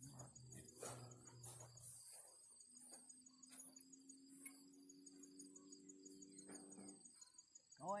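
Faint crickets chirping in a steady, even high pulse, with a faint low hum coming and going beneath them. No gunshot.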